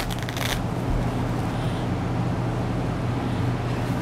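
Brief rustling and clicks close to the microphone in the first half second as a person moves right past it, then a steady low hum of room noise.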